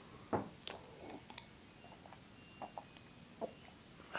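Faint gulping as milk is drunk from a glass jar: a few soft swallows and small clicks, the loudest about a third of a second in.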